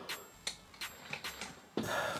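Faint scattered clicks and rustling from a towel and shirt brushing against a clip-on microphone as the wearer moves, with a brief louder rustle near the end.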